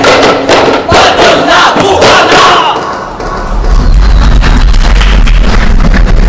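Daf frame drums struck in a fast run together with a group's shouted voices, ending about three seconds in. After that a steady low rumble takes over.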